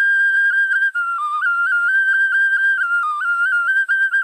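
Solo melody on a high, pure-toned wind instrument such as a flute, without accompaniment: one line that holds notes and steps up and down, with quick ornamental dips between notes and a short breath about a second in.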